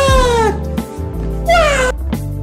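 A cat meowing twice, each meow a single call falling in pitch: a longer one at the start and a shorter one near the end, over background music.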